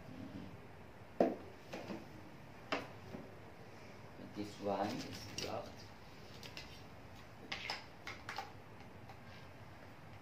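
Hard plastic clicks and knocks from video doorbell housings being handled and set down on a table: separate taps spread through, with the sharpest about a second in. A brief murmured voice sounds a little before the middle.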